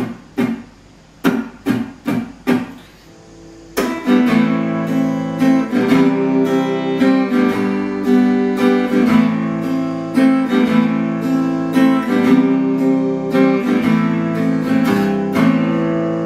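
Acoustic guitar strummed: about seven short, separate strums, a brief pause, then a continuous chord progression of A minor, C, G and back to A minor played with a steady down-and-up strum pattern.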